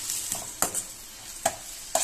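Sliced onions sizzling in oil in a steel kadai while a perforated steel spatula stirs them. The spatula clinks sharply against the pan three times.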